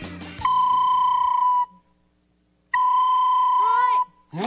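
A recorder playing two long, steady notes at the same high pitch with a short silence between them. It imitates the song of an autumn insect such as a cricket, though it also sounds like an owl's hoot.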